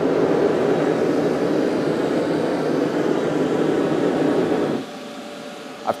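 Propane forge burner running with a steady rushing noise, tuned to an even burn for forging heat. A little under five seconds in it cuts off suddenly as the forge is shut off, leaving a much fainter hiss.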